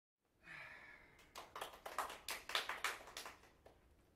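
Brief, scattered applause from a small audience in a small room: about a dozen uneven claps over roughly two seconds, thinning out before the playing starts. It is preceded by a short breathy sound.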